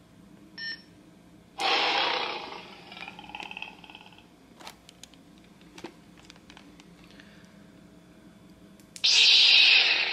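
Lightsaber prop sound board (Plecter Labs Nano Biscotte V4) through its small speaker: a short beep, then a loud whoosh about one and a half seconds in that fades over about two seconds, followed by faint clicks. A second loud whoosh starts suddenly about a second before the end, as the NeoPixel blade lights up in its new colour, green.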